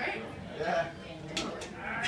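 Faint human voice with a wavering, bleat-like quality, with no guitar playing.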